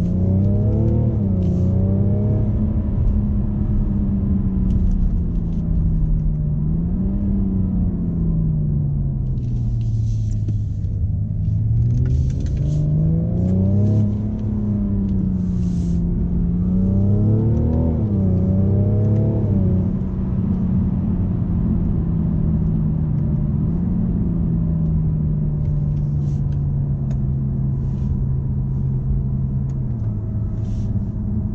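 BMW M550d's quad-turbo 3.0-litre inline-six diesel heard from inside the cabin, pulling in a low gear. Its note rises and falls several times as the car speeds up and eases off, then settles lower over the last ten seconds, all over a steady road rumble.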